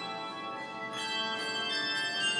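A handbell choir playing: several bells struck together in chords, each note ringing on at length, with new chords struck about a second in and again shortly after.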